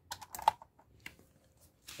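A quick cluster of small clicks and rattles, then a single click about a second later: a mains plug being pushed into a power strip.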